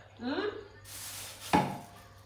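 Kitchen dishes and utensils being handled, with one sharp knock about one and a half seconds in.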